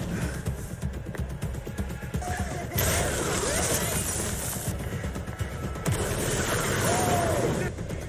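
Animated action-scene soundtrack: music with dense percussive hits, then a loud rushing surge with a few sweeping tones that starts about three seconds in and stops suddenly near the end.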